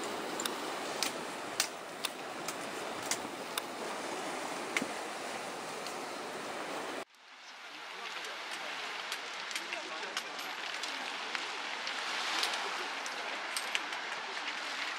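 Outdoor ambience of wind and sea wash, a steady noisy hiss with scattered sharp clicks. It cuts out suddenly about halfway through and builds back up as a thinner, less bassy hiss with more clicks.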